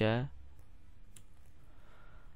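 The end of a spoken word, then a single short click about a second in from the computer being operated, over faint steady background noise.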